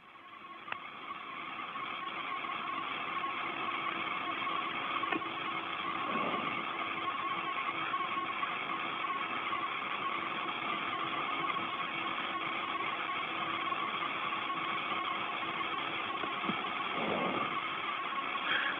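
Steady static hiss with a faint hum on an open space-to-ground radio channel, fading in over the first couple of seconds and then holding even.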